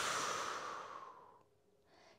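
A woman's long, audible exhale, a sighing breath out that fades away about a second and a half in, followed by a faint short breath in near the end.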